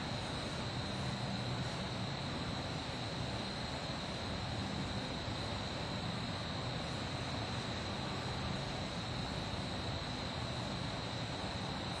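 Steady background noise with a constant high-pitched whine running under it, unchanging throughout, with no distinct events: the room tone of the recording.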